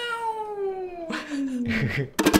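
A single long, drawn-out voice call sliding steadily down in pitch from high to low over about two seconds.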